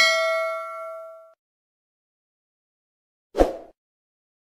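Notification-bell sound effect: a bright ding with several steady pitches, ringing out and fading over about a second and a half. A short dull pop follows about three and a half seconds in.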